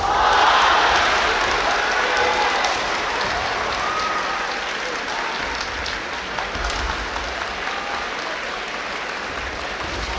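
Audience applause in a large reverberant hall. It breaks out suddenly, is loudest in the first second or two, and eases off gradually, with faint voices underneath.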